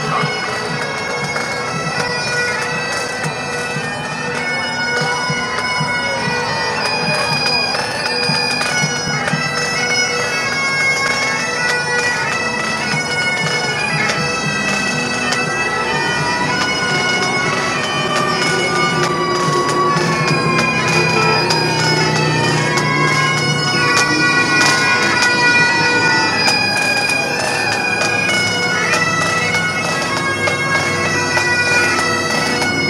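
Bagpipes of a marching pipe band playing a tune over their steady drones, the melody rising and falling in long phrases.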